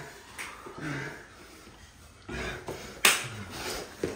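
A single sharp smack about three seconds in, with short low grunts and scuffling around it.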